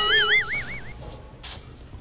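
A high, whistle-like tone that wobbles evenly up and down in pitch for just under a second, starting with a sharp click. It is a comic sound effect laid over the sketch. A brief hiss follows about a second and a half in.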